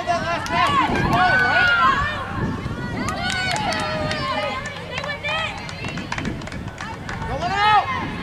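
High voices shouting and calling across a soccer field, several overlapping calls from players and the sideline, with a few short sharp clicks around the middle.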